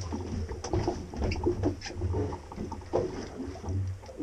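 Water lapping and slapping irregularly against the hull of a drifting fibreglass fishing boat, with wind gusting over the microphone in an uneven low rumble.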